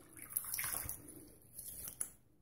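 Water splashing as hands rinse shaving lather off a face over a sink, in two bursts, the second shorter.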